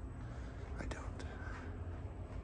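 A person whispering faintly, with a few soft clicks, over a low steady hum.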